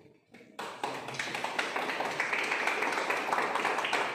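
A small group of people clapping, starting suddenly about half a second in and carrying on steadily.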